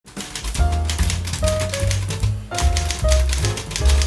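Rapid typewriter keystrokes clacking over intro music with held notes and a bass line.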